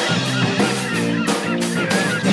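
Goose honking over rock-style theme music with guitar and drums.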